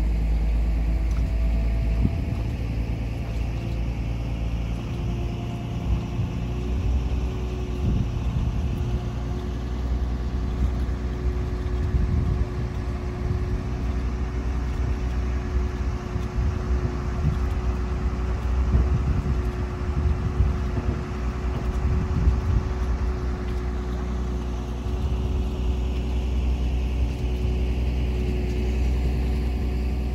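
Cable ferry's engine running: a steady low rumble with a steady hum above it, and irregular low buffeting over it.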